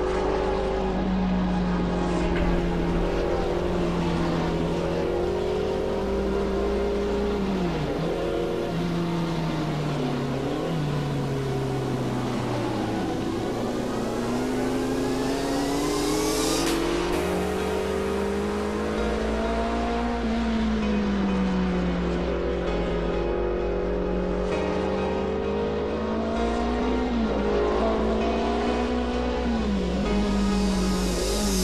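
Touring race car engines at racing speed, their pitch climbing and falling with throttle and gear changes and dropping sharply a few times as cars pass, over background music with a steady low pulse.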